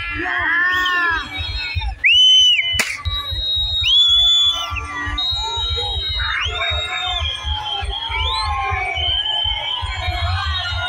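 A dense crowd shouting, yelling and whistling around a rampaging bull-costume dancer, with the loudest long high shouts about two and four seconds in. Music with a low thumping beat plays underneath, and there is one sharp click just before three seconds in.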